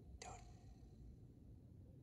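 Near silence broken once, about a fifth of a second in, by a short whispery burst of noise from a Necrophonic spirit-box app playing through a phone speaker.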